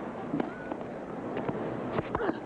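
A few sharp knocks of tennis racket striking ball, about a second apart, over the steady murmur of a stadium crowd.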